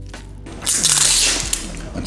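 Foil lid being peeled off a plastic dipping-sauce cup: a loud crinkling tear starting about half a second in and lasting just over a second, over faint background music.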